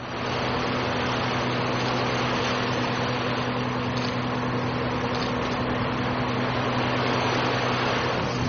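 Boat engine running steadily, a low hum under a loud rush of wind and water noise that comes in abruptly at the start.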